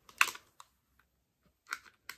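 Plastic eyeshadow palette compacts being handled, clicking and tapping: one sharp click just after the start, then a few light clicks near the end.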